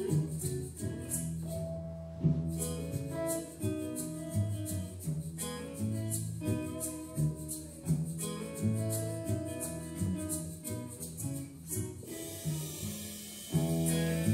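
Live band playing an instrumental passage of a song, led by a picked hollow-body archtop guitar melody over a steady beat of high ticks about twice a second.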